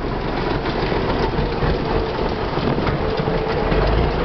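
Russian timber truck's engine running and its body rattling as it drives, a steady low rumble with loose clatter.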